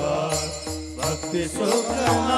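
Warkari bhajan: men singing a devotional chant in unison over a steady rhythm of small brass hand cymbals (talas) and a mridang drum. The singing is softer in the middle of this stretch and swells again at the end.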